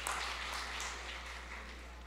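Faint room noise of a large banquet hall that slowly dies away during a pause in a speech, over a steady low electrical hum from the sound system.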